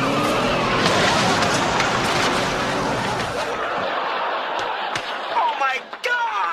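Crash sound effect of a car bursting through a wall: a loud noisy rush of breaking and clattering debris that dies away after about three and a half seconds, with a few sharp knocks afterwards. A voice shouts near the end.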